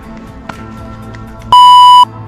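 Background music, then a loud, steady electronic beep about one and a half seconds in, lasting half a second.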